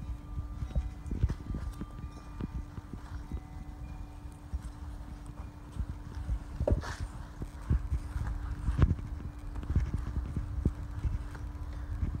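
Microfiber towel rubbing and buffing a car's side window glass and door trim, with many irregular low thumps and knocks of hand and phone handling and a few brief sharper scrapes. A steady low hum runs underneath.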